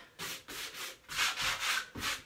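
Sanding block rubbed by hand in quick back-and-forth strokes over a painted wooden door, distressing the paint. It is a rhythmic scratchy rasp, about five strokes in two seconds.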